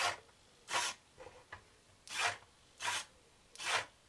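Small hobby servos driving the 3D-printed eyelids of a robot head, each move a short buzzing whir, repeated about every three-quarters of a second as the lids shut and open.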